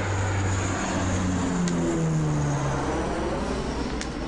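Twin-engine propeller transport aircraft flying low past, its engine drone steady with the pitch sliding down as it goes by.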